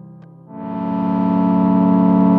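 Sequential Prophet 12 synthesizer patch: the tail of the previous notes fades out, then about half a second in a sustained chord of several held tones swells in and holds steady.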